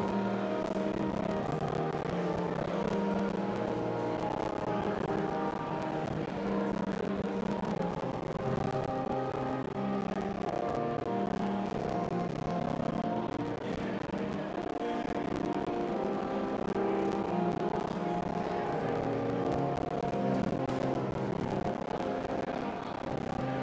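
Church organ playing held chords that shift every second or two, a postlude at the close of Mass.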